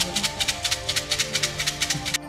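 Bamboo cup of kau cim fortune sticks shaken rapidly, the wooden sticks rattling against each other and the cup at about seven shakes a second. The shaking is meant to work one numbered stick loose so it falls out. Music plays underneath.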